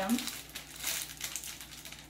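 Plastic bouquet sleeve crinkling as it is handled, a dense run of small irregular crackles.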